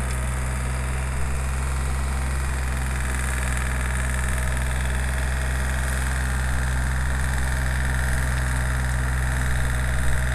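Compact tractor's engine running steadily as it drives a rear-mounted rototiller through garden soil, a low, even drone that does not rise or fall.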